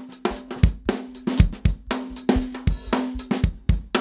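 A drum loop plays back through an auto-pan plugin that sweeps it from left to right, with the pan law at 0 dB so the middle gets no level compensation. The hits come in a quick, steady rhythm over a held low tone.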